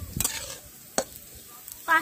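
A spatula stirring dry-roasting mung and masoor dal in an iron kadai, near the end of the roasting: a scraping rattle of grains against the pan near the start and a sharp click of the spatula on the metal about a second in.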